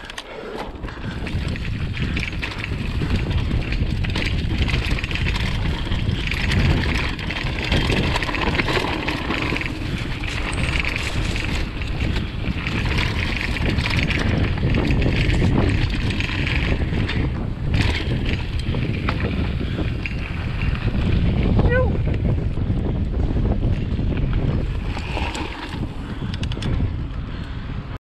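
Mountain bike rolling fast down a rough dirt singletrack: tyre rumble and jolts of the bike over the ground, mixed with wind buffeting a GoPro action camera's microphone. A brief faint squeak sounds about three-quarters of the way through.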